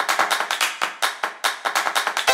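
Quick rhythm of sharp clap-like percussion hits, about five a second, with no melody: the percussion that opens the end-screen music.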